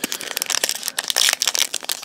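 Foil wrapper of a Pokémon Base Set booster pack crinkling as it is torn open by hand: a dense run of sharp crackles.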